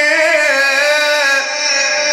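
A male Qur'an reciter chanting in the Egyptian mujawwad (tajweed) style, holding one long melismatic note that wavers and trills in pitch before steadying about one and a half seconds in.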